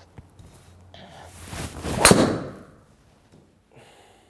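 Driver swing with a rising whoosh, then one sharp, loud crack of the clubhead striking a teed golf ball about two seconds in, ringing briefly in the small room. The ball was struck high on the face and slightly toward the toe.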